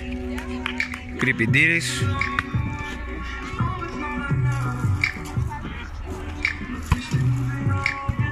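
Music with a beat: a bass line that returns about once a second under sustained higher tones.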